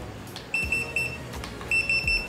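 Electronic dog training collar beeping in its beep mode: a high electronic beep pulsing several times a second, in a burst from about half a second in and another near the end.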